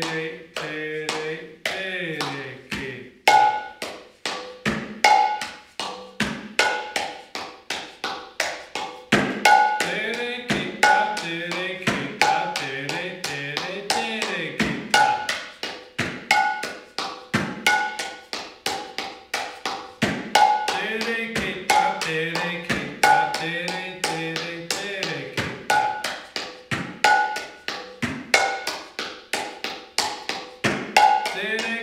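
Mridanga, the two-headed Indian barrel drum, played by hand in a steady repeating rhythm of several strokes a second. Bright ringing strokes on the small treble head mix with deep strokes on the bass head that bend in pitch.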